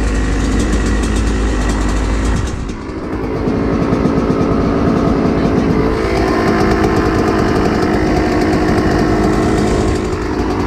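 Dirt bike engine running with heavy low rumble for the first couple of seconds, dipping briefly near three seconds, then settling into a steady idle with a rapid firing beat.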